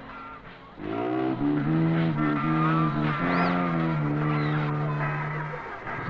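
A man's sad song, slowed down so the voice drags into long, low, slowly wavering notes. It begins about a second in.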